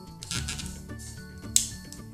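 Soft background music with steady held tones. A light click comes about one and a half seconds in, as a metal hook works rubber bands on a plastic loom.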